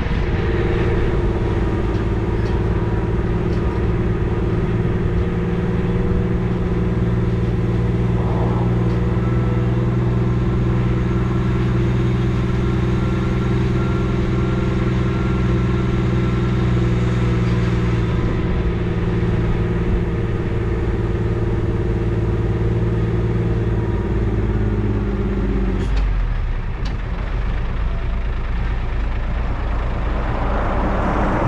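A car transporter truck's engine running at a steady low speed, with a constant hum. About twenty-five seconds in, its note drops away as the truck slows.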